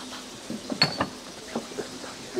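A few irregular knocks and clicks, the loudest a sharp click about halfway through with a brief high ring.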